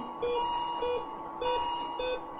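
Electronic medical monitor beeping: short, even beeps about every 0.6 seconds, over a steady higher electronic tone.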